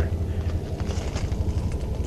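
Footsteps crunching on landscaping gravel, over a low steady rumble.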